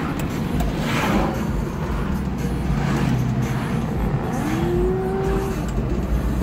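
Car cabin noise while driving: a steady low engine and road rumble. A short rising tone comes in about four seconds in and lasts about a second.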